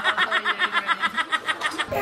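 A woman laughing hard in a fast, even string of laughs, about eight a second, that cuts off suddenly near the end.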